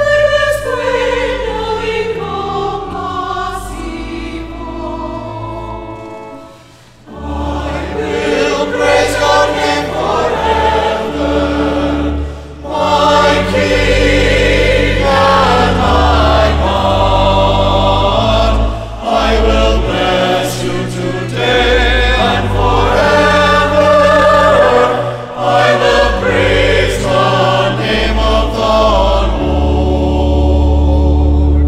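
A mixed choir singing a hymn in sustained chords. One phrase ends on a held chord that fades out about six seconds in, and after a short pause the choir comes back in louder with the next phrase.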